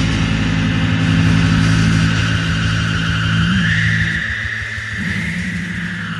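Closing bars of a psychedelic rock song: the band holds a low chord, and a high whining tone rises a step about three and a half seconds in. The low chord drops away about four seconds in, leaving the high tone as the music winds down.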